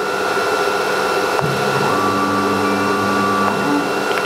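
CNC router starting up again after an automatic safety stop: a steady high whine of the spindle and dust extraction, getting louder at first. A click a little over a second in is followed by a low motor hum for about a second and a half as the machine moves.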